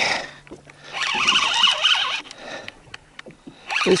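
Spinning reel being cranked to bring up a hooked fish: a burst of whirring gear noise about a second in, lasting about a second, then quieter with a few faint clicks.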